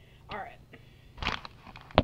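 A person's brief wordless vocal sounds, then one sharp knock near the end, the loudest sound here.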